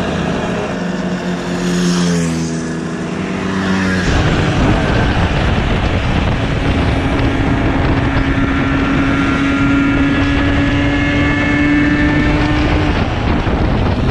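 Small 50cc two-stroke moped engines going past, their pitch shifting as they pass; about four seconds in the sound changes to a moped heard from its own saddle, its engine holding a steady note at cruising speed under heavy wind noise.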